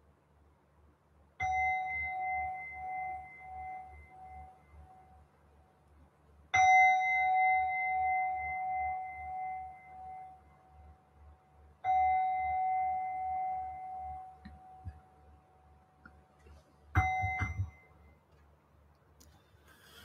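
Meditation bell struck three times, each ring fading slowly over several seconds. A fourth strike near the end is damped after less than a second. The bell marks the close of the guided meditation.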